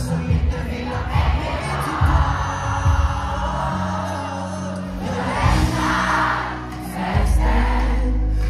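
Live pop music through a concert PA, recorded from within the audience, with beats in the bass and crowd noise. A heavy, sustained bass comes in about seven seconds in.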